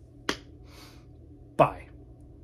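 Two brief, sharp mouth or voice sounds from a man, about a second and a half apart, the second louder, with a short breath between them.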